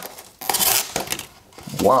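A folding knife's blade slicing through corrugated cardboard at an angle. It is one short scraping cut lasting under a second, starting about half a second in.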